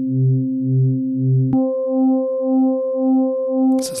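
Korg opsix digital synthesizer sustaining a held note through its wavefolder operator mode, with a slow LFO-rate operator feeding the folder so the tone pulses about twice a second. About a second and a half in, the lowest part of the tone drops out suddenly and the timbre changes while the pulsing carries on.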